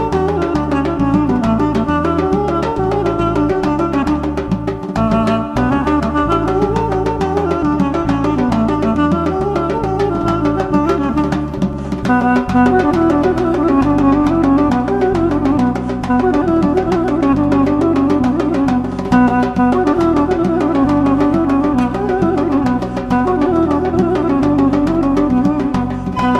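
Armenian folk dance tune led by a duduk playing a quick, ornamented melody over drums and a rhythmic bass accompaniment. About twelve seconds in, the music moves into a new section.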